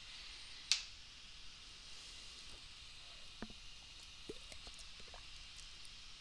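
Faint steady hiss of room tone through a desk microphone, with one short breathy sound about a second in and a few faint ticks in the second half.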